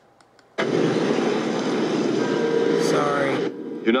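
A few soft computer-mouse clicks, then a film soundtrack starts abruptly through computer speakers. It plays about three seconds of loud, dense, noisy sound with a brief rising tone near the end, and then a man's voice begins.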